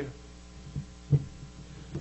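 Low steady hum from the sound system, broken by a soft low thump about a second in as a book is set down on the wooden pulpit.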